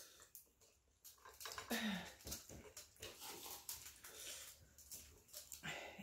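Quiet eating sounds: faint clicks and rustles of fingers picking meat from boiled crab and lobster shells, with a brief low hum about two seconds in.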